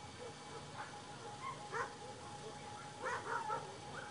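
A dog barking in short sharp barks: one, then another about a second later, then a quick run of three near the end.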